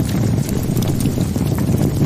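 Cartoon fire sound effect: a steady, dense crackle and rush of flames.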